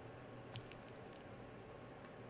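Near silence with a faint steady low hum, and a single faint computer-mouse click about half a second in.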